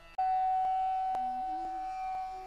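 Music: a flute holds one long steady note, while lower notes change beneath it about halfway through.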